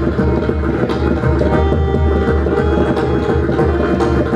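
Pakhawaj drumming in a fast, dense run of strokes, with deep resonant bass-head strokes under crisp treble strokes. A harmonium holds a steady melodic line beneath it.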